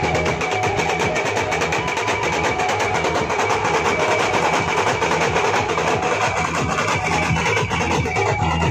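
A group of band drums beaten with sticks in a fast, dense, even rhythm, with a steady high tone held above the drumming.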